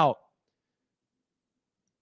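A man's spoken word ends just after the start, followed by dead silence with no room sound.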